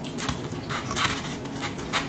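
Soft bread bun tearing and crackling as a chicken drumstick is pulled out of it by hand, heard as several short crackly rustles close to the microphone, loudest about a second in and near the end.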